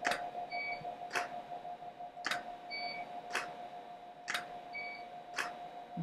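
DSLR camera firing a series of slow-shutter exposures: each exposure is a sharp shutter click, a short electronic beep, and a second click about a second later, repeating about every two seconds, four times. A faint steady hum runs underneath.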